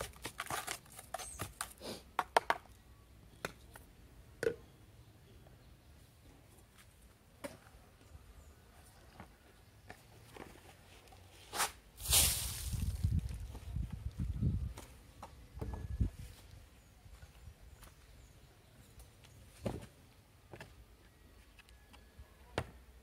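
Hands stirring sand-based potting mix in a plastic basin, giving a gritty scraping for the first couple of seconds. After that come scattered small clicks and knocks. About twelve seconds in there is a loud sudden bump, followed by a low rumble lasting a few seconds.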